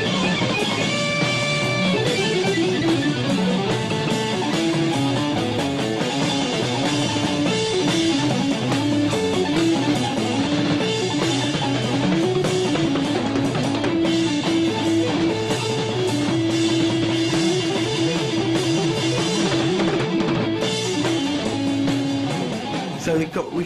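Organ played through a fuzz box in a late-1960s live band, holding an unbroken lead line of notes over a drum kit and cymbals. The notes run on without a single break because lifting a hand off the fuzzed organ would set off feedback.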